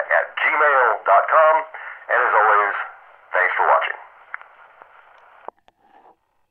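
A man's voice played back from an Edison phonograph cylinder, thin and narrow-band like an old radio, with surface hiss under it. The speech stops about four seconds in, leaving only groove hiss, then a sharp click and a few small ticks before the sound cuts out.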